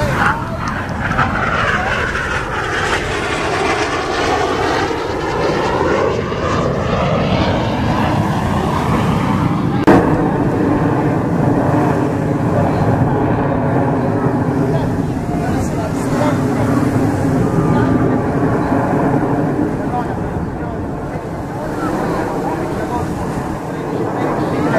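Formation of Aermacchi MB-339 jet trainers with turbojet engines roaring overhead during an aerobatic display. In the first several seconds the roar's pitch sweeps down and back up as the jets pass. After a sharp click about ten seconds in, a steadier drone with a few even tones follows as the formation pulls up into a loop.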